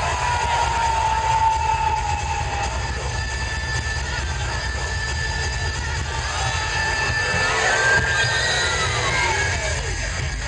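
Sound-effect passage in a dance routine's music mix, played loud over the stage speakers: a low rumble with slowly falling tones. Near the end a whistle rises, then drops steeply in pitch.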